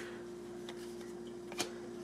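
Trading cards being handled: a faint tick and then a sharper click about one and a half seconds in as the top card is slid off the stack, over a steady faint hum.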